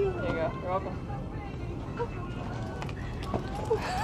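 People talking, mostly in the first second, over the low background noise of a shop.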